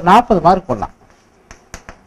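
A man's voice speaks briefly, then three quick sharp taps of chalk against a blackboard come in the second half.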